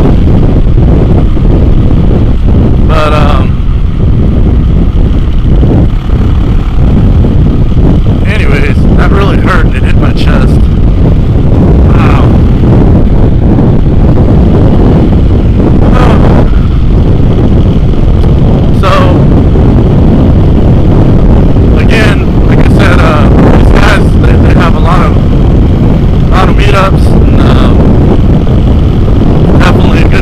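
Heavy, steady wind buffeting on the microphone of a Yamaha WR450F dirt bike ridden at road speed, very loud and close to clipping, with the bike's single-cylinder engine running underneath.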